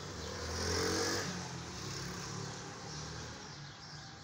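A motor vehicle's engine passing by, loudest about a second in, with its pitch dropping as it goes, then fading.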